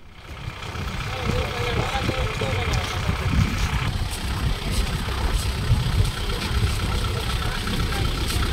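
Farm tractor's diesel engine running as it drives slowly, with people talking around it. The sound swells up over the first second.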